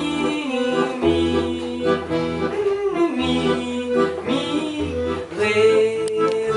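Accordion music from a small band: held chords that change about once a second, with low bass notes underneath.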